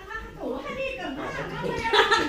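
Indistinct voices talking, not clear enough to make out words; speech only, with no other distinct sound.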